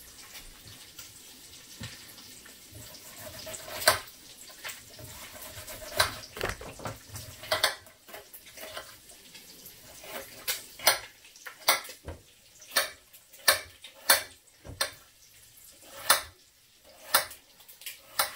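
Paring knife chopping an onion on a glass cutting board: sharp clicks of the blade striking the board. A few come scattered at first, then they come every half-second to second through the second half.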